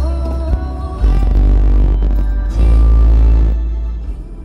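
Loud music with singing and heavy bass, playing on the truck's radio inside the cab.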